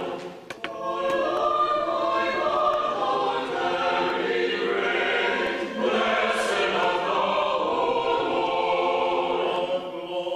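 Mixed choir singing Orthodox liturgical music a cappella, sustained chords with the voices moving together; the sound dips briefly with a few clicks about half a second in.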